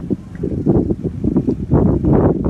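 Wind buffeting the phone's microphone in gusts, a low rumble that drops briefly near the start.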